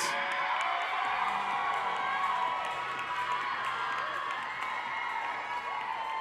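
Audience cheering and whooping, many shrill voices overlapping, with some scattered clapping.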